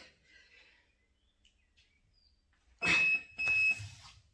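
A digital interval timer gives a high electronic beep, held about a second, near the end, marking the end of the push-up round; a burst of noise sounds with it.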